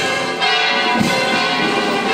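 Church bells ringing over brass band music with a steady bass drum beat.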